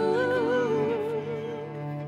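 A female vocalist holding a long sung note that goes into a wide vibrato, over a sustained band backing; the note eases off in the second half.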